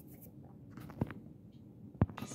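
Faint scratchy handling and rustling noise over a low room rumble, with one short knock about a second in.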